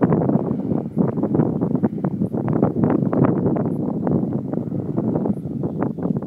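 Loud, irregular rumbling and crackling noise on the phone's microphone, the kind made by wind buffeting or handling. It fades away just after the end.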